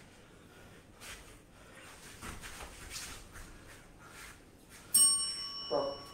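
A single bright bell ding about five seconds in, a metallic ring of several high tones that fades over a second or two. Before it there are only faint scattered thuds.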